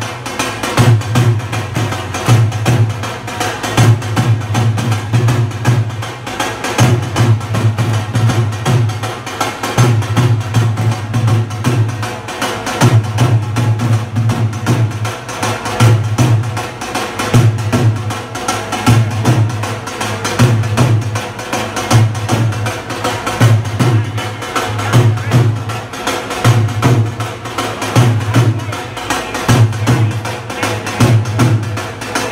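A troupe of hand drummers playing together, small frame drums and a double-headed barrel drum, in a steady repeating rhythm with a deep beat under sharp hand strokes.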